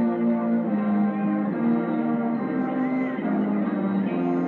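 High school marching band's brass section, with sousaphones, playing a slow passage of held chords, each chord lasting about half a second to a second before moving to the next.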